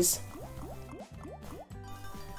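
Online slot game's bubbly underwater sound effects: a quick run of short rising bloops, about four a second, while the reels spin, over the game's background music.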